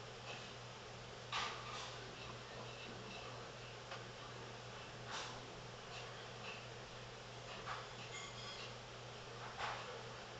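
Faint room tone with a steady low hum, broken by a few short, quiet breaths about every four seconds.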